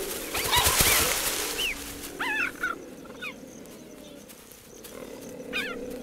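Cheetahs chirping in short, high, rising-and-falling calls, mostly in the first few seconds and again near the end. A harsh hissing snarl comes about half a second in, over a steady low tone.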